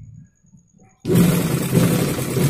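Motor-driven sewing machine starting suddenly about a second in and then running fast and loud, topstitching along the piping sewn onto a blouse neckline.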